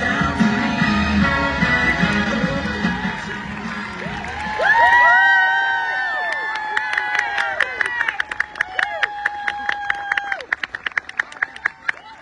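Cheerleading routine music over a stadium PA with a steady beat and bass, cutting off about four seconds in. High-pitched whoops and cheering follow, then a quickening run of sharp claps that stops shortly before the end.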